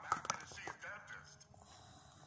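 A plastic action figure being handled and knocked against a tabletop, with several sharp clicks and knocks in the first second, then quieter handling.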